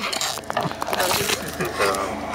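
Close handling noise inside a car, with rustles and light knocks and a few brief snatches of speech.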